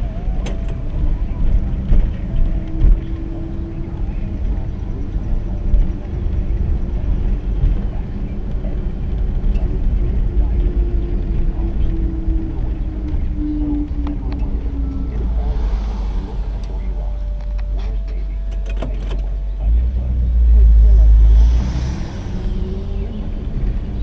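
The engine of a 1959 Chevrolet Bel Air running at a slow cruise, heard from inside the cabin over a steady low road rumble. Near the end a louder low rumble swells for about two seconds.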